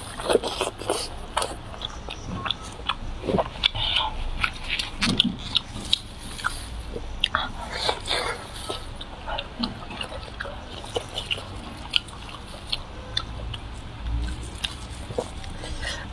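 Close-up eating sounds of biting into and chewing juicy braised meat: irregular wet smacks and clicks from the mouth.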